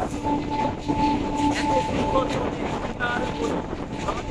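Electric suburban local train running at speed, heard from its open door: wheels rumbling and clattering on the rails. A steady humming tone runs through it with brief breaks.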